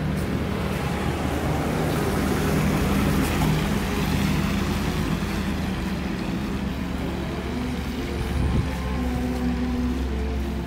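An SUV passing close by on a wet road. Its tyre noise and engine swell over a few seconds and then fade as it pulls away, over a steady low hum of city traffic, with a brief low thump near the end.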